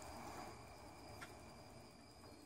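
Near silence: only faint steady background noise.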